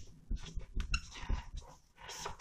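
Whiteboard marker writing on a whiteboard: a run of short scratchy strokes, with a brief high squeak of the felt tip just under a second in.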